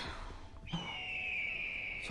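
A faint, single high tone from the drama's soundtrack, starting under a second in and held steady while sliding slightly lower in pitch.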